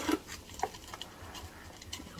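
Fine gravel potting mix trickling from a plastic scoop into a small plant pot: a sharp click as it starts, then faint scattered ticks of grains landing.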